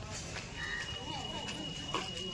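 Faint outdoor background of distant people's voices, with a thin steady high-pitched tone that starts about half a second in.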